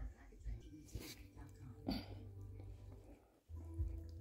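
Faint handling noise: a low rumble with a few soft knocks as the recording phone or camera is moved, and one short, sharper sound about two seconds in.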